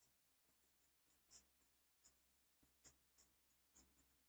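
Very faint strokes of chalk writing on a chalkboard, a few short scratches spaced about a second apart, over near-silent room hum.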